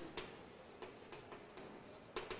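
Chalk on a blackboard while a word is being written: a few faint, irregular ticks and taps.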